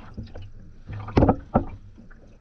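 Water sloshing and muffled knocks from sneakered feet moving in a water-filled tub, heard from a submerged camera, with two louder thumps a little past a second in.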